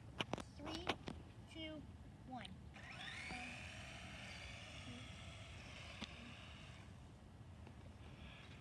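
A toy RC car's electric motor whining up in pitch about three seconds in as the car speeds off along a concrete path, then holding a steady whine that slowly grows fainter as it gets farther away. A few sharp clicks come near the start.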